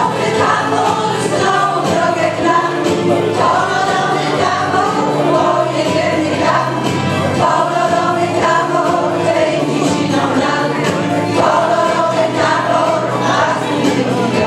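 A women's folk singing ensemble singing a song together in chorus, the voices continuing without a break.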